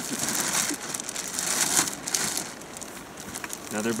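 Large black plastic garbage bag rustling and crinkling as it is handled, loudest in the first two seconds and quieter afterwards.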